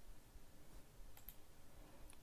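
Near silence: room tone with a few faint clicks a little past the middle.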